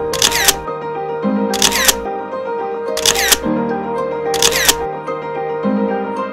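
Background music overlaid with four camera-shutter sound effects, each a quick double click, spaced about a second and a half apart.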